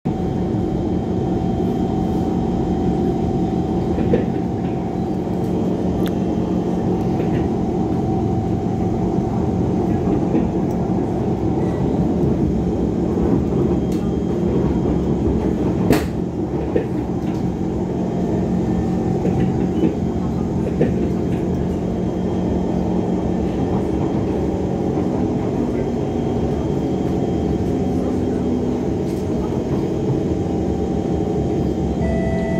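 Singapore MRT train heard from inside a moving car: steady running noise with a constant hum and whine. There is a single sharp click about halfway through.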